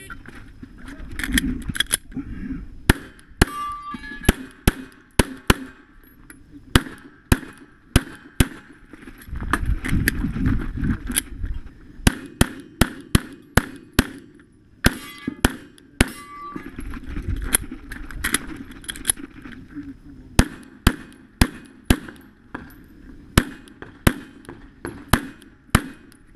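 Pistol shots fired in quick strings, dozens in all, with short pauses between strings, from a competitor running a USPSA stage. Low rumbling noise comes from moving between shooting positions, loudest about ten seconds in.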